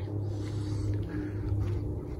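Steady low drone of an aircraft passing overhead.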